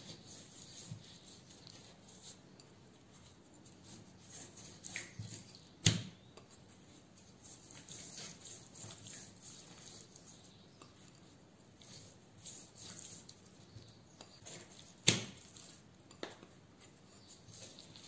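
Hands rubbing a dry spice rub into raw rump steak on a bamboo cutting board: faint, soft rubbing and patting of wet meat, with two sharp knocks about six seconds in and again about fifteen seconds in.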